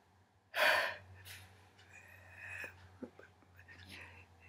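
A woman's sharp breathy gasp about half a second in, the loudest sound, followed by softer whispery breath and mouth sounds and a few faint taps.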